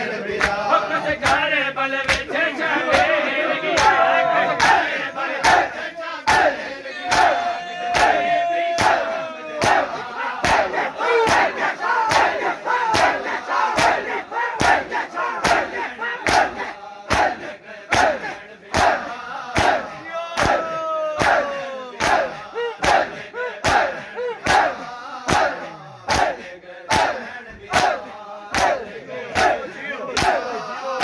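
Matam: a crowd of men beating their bare chests with open hands in a steady, loud rhythm of slaps, a little more than one a second. Over the slaps the men chant and shout together, most strongly in the first half.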